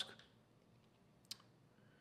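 Near silence: room tone, with one short, sharp click a little past the middle.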